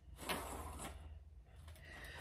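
Faint rustling and handling noise from a plastic ornament-ball garland being held and shifted against a wall.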